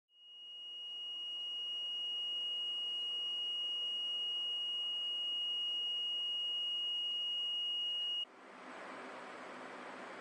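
Small electric buzzer, powered by a homemade five-cell lemon-juice battery, sounding one steady high-pitched tone like a little alarm. The tone cuts off suddenly about eight seconds in, leaving a faint steady hiss.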